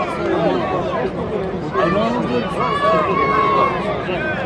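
Several people talking and calling out over general crowd chatter.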